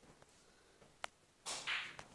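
Quiet room with a single sharp click about a second in, then a short, breathy rush of air near the end, like a breath drawn just before speaking.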